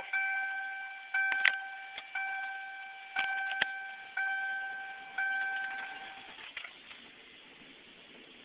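1997 Ford Crown Victoria's dashboard warning chime sounding with the key turned on before a cold start: a bell-like ding about once a second, six times, dying away between dings, then stopping about six seconds in. A few sharp clicks fall among the dings.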